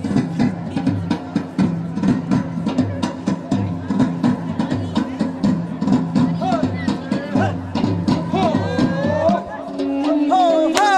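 Armenian folk dance music with a fast, steady drum beat under low sustained tones; in the second half a melody line bends up and down over the beat.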